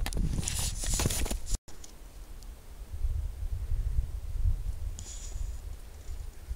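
Handheld camera jostled while being carried over snow: irregular crunches and handling knocks for the first second and a half. After a short gap, a low wind rumble on the microphone with faint rustles.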